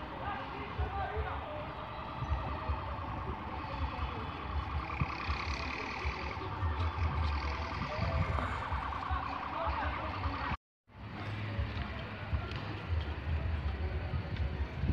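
Outdoor ambience with wind buffeting the phone microphone in gusts, under faint voices and street noise. The sound cuts out completely for a moment about ten and a half seconds in.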